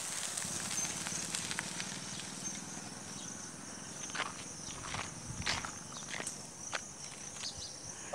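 Steady high calling of insects, with a faint low hum of a distant motorcycle engine that fades out around the middle. A few short clicks and shuffles close by between about four and six seconds in.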